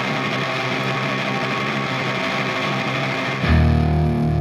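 Emo/hardcore punk band recording: a steady wash of effects-laden, distorted electric guitar, then near the end loud distorted guitar and bass come crashing in.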